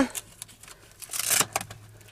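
Handling of a plastic cervical collar and clothing around a patient's neck: a few faint clicks, then one brief rustle about a second in.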